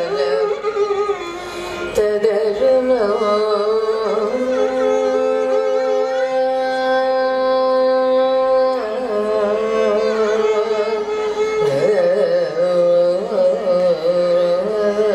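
Carnatic vocal music: a woman singing with violin accompaniment, her melody gliding and ornamented, then holding one long steady note through the middle before moving on again.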